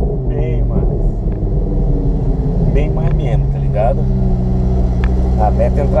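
Audi R8's engine running steadily at low revs while cruising slowly, heard from inside the cabin.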